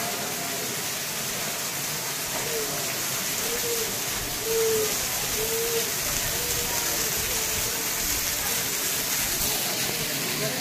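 Heavy rain falling on the walkway's sheet-metal canopy and paving, with water running off the rock face, making a steady hiss. Faint voices are heard behind it around the middle.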